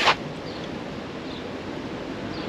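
Steady outdoor background noise with wind on the microphone, opening with a short hiss.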